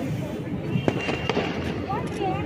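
Firecrackers going off: two sharp cracks about a second in, close together, over a crowd's chatter.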